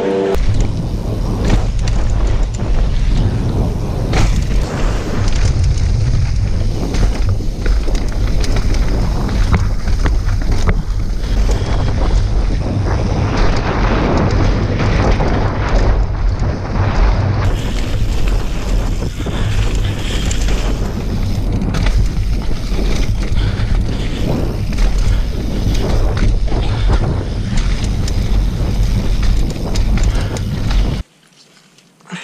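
Wind rushing over an action-camera microphone and mountain-bike tyres rolling and rattling over a dirt downhill trail at speed, with frequent small knocks from bumps. It starts abruptly just after the start.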